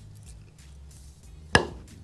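A hard pool cue tip striking the cue ball on a Predator True Splice cue with a Revo 12.9 carbon-fibre shaft: one sharp hit about one and a half seconds in, with a short ringing decay. This is the thud that a hard tip always gives.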